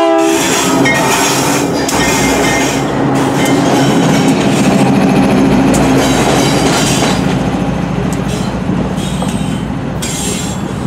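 Diesel freight locomotive passing close by, loud, with a steady engine drone over wheels clattering on the rails. The tail of a horn blast cuts off at the start, and the sound eases off slightly near the end as the locomotive moves away.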